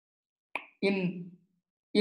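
A man's voice: a short mouth click or lip smack about half a second in, then the single spoken word "in".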